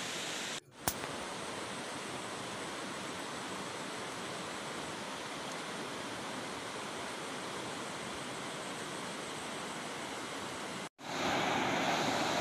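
A steady, even rushing hiss of outdoor ambience. About a second before the end it cuts to the louder rush of a shallow river running over rocks.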